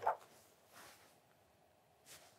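Near silence: room tone, after a brief soft sound at the very start.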